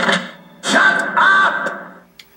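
Soundtrack of a TV comedy trailer played from a DVD: the music stops at the start, then comes about a second of noisy sound with a held high tone, which fades away near the end.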